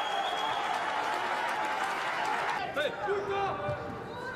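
Arena audience applauding and cheering a judo ippon, an even wash of clapping that cuts off sharply about two and a half seconds in. A few short calls follow in the hall.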